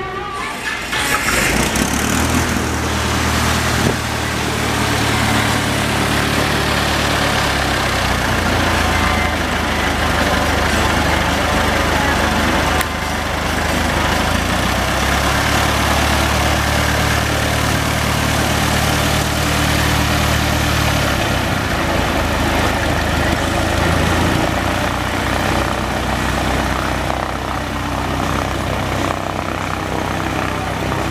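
Four-cylinder piston engine of a low-wing single-engine plane running with its cowling off, propeller turning. The engine settles into a steady run about a second in, and its speed steps up and down a few times.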